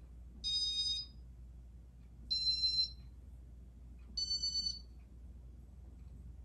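Three high-pitched electronic beeps, each about half a second long and about two seconds apart, each at a slightly different pitch, over a faint low hum.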